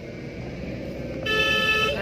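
Low rumble of a slowly moving car heard from inside the cabin. Just over a second in, a vehicle horn sounds once, a steady tone held for under a second.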